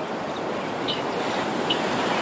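Steady wash of sea surf on a beach, a continuous even rushing noise that grows slightly louder, with a couple of faint short high sounds over it.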